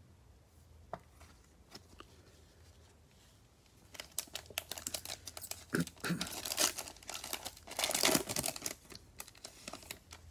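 Cellophane wrapper of a Prizm basketball cello pack being torn open and crinkled, starting about four seconds in and loudest near the end. A few faint clicks come before it.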